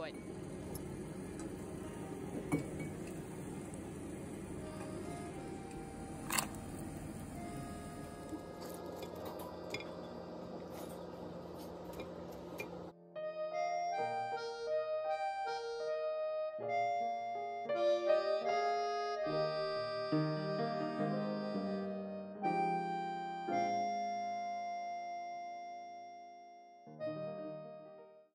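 About thirteen seconds of steady kitchen room noise with a few sharp clinks and knocks, then an abrupt change to background keyboard music with a gentle piano-like melody.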